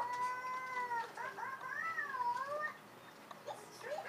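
A child's high-pitched wordless vocalizing: one held note lasting about a second, then a longer wavering note that slides up and down, with a cat-like, meow-like sound.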